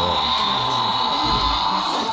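Electronic toy T. rex playing its recorded roar through the small speaker in its belly: one long, steady electronic call that stops right at the end.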